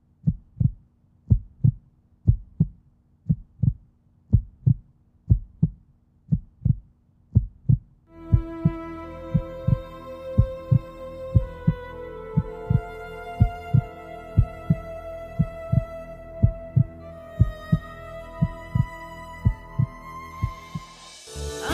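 Heartbeat sound effect, a steady rhythm of low double thumps (lub-dub). About eight seconds in, soft music of slow sustained chords comes in under it and the heartbeat carries on.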